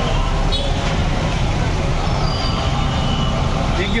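Street traffic noise: motor vehicles running close by with a steady low rumble, mixed with the voices of a crowd.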